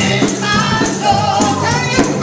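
Gospel singing by several voices, with a hand-held headed tambourine struck in rhythm, its metal jingles ringing on each beat.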